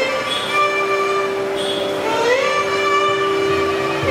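Carnatic violin playing a free-time Bhairavi raga alapana. It holds long notes and slides upward about two seconds in, over a steady drone note.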